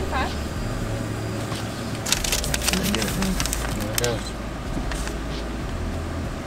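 Vehicle engine idling, a low steady hum inside the cab. From about two seconds in comes a couple of seconds of crisp crackling and rustling as a paper receipt and card are handled.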